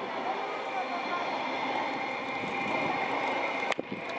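Indistinct voices over a steady outdoor background noise, broken off by an abrupt cut near the end.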